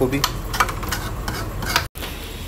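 Steel ladle clicking and scraping against a steel pot and plate while serving dal, over a steady hiss. The sound drops out abruptly near the end.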